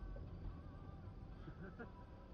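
Steady low rumble of a car driving, heard from inside its cabin, with faint talk near the start and again late on.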